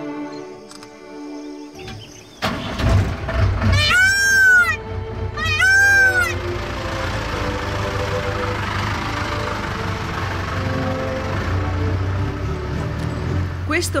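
Sustained string music, then two loud, arching, wailing calls of an Indian peafowl about four and six seconds in, over a steady low outdoor hum, with soft music carrying on afterwards.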